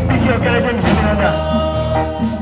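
Church choir singing with instrumental accompaniment: voices over steady low bass notes and percussion hits.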